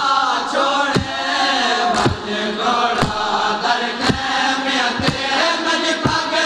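Men chanting a nauha, a Shia lament, in chorus, with hands striking chests in matam, about one strike a second.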